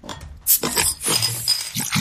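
Glass clinking: a sharp strike about half a second in, followed by brief high ringing.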